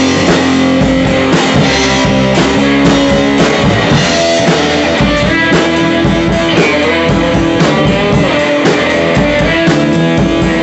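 Live rock jam: an amplified electric guitar played with a drum kit, loud and continuous, with a steady beat of drum hits under sustained guitar notes.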